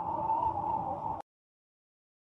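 A logo sound effect: a wavering, hissy sound with a mid-pitched band that cuts off abruptly just over a second in, followed by dead silence.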